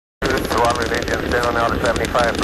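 The Space Shuttle Challenger's rocket engines make a dense, crackling noise as the stack climbs after liftoff, with a voice speaking over it. The sound cuts out completely for a moment at the start.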